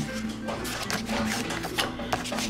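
Soft background music, with the rustle and small taps of a cardstock flap in a chipboard scrapbook being lifted and folded over by hand.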